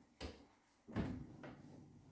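A few soft knocks as a pianist settles on the bench at an upright piano: two thumps about three quarters of a second apart, the second the louder, then a lighter one.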